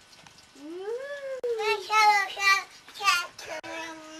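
A cat meowing several times. The first meow is long and rises then falls, starting about half a second in; shorter, higher meows follow around two and three seconds in, and another comes near the end.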